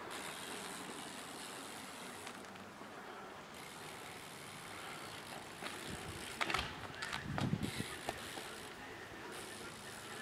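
BMX bike ridden on asphalt, its tyres rolling with a steady noise. A few sharp knocks come a little past the middle, then a louder low thud as the wheels come back down on the road during a trick.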